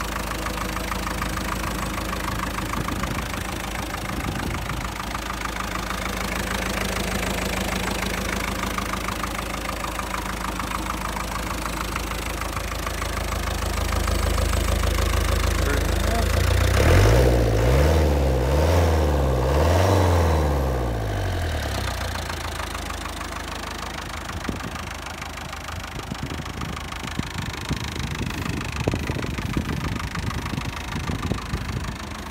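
A Land Rover 2.25-litre diesel engine idling steadily. About halfway through it is revved, the pitch rising and falling a few times over several seconds, before settling back to idle.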